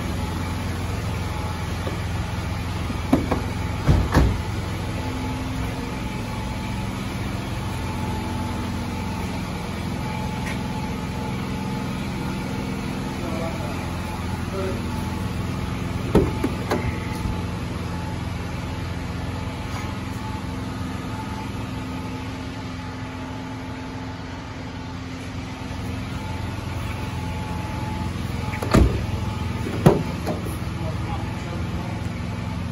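A 2006 Ford Focus's four-cylinder engine idling steadily, with a few sharp knocks a few seconds in, about halfway through, and near the end.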